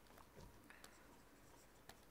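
Faint taps and scratches of a pen stylus writing on a tablet, a few light clicks over near silence.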